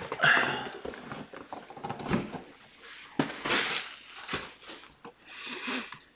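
Rustling and scraping of cardboard boxes and packaging being handled, coming in several separate bursts of noise.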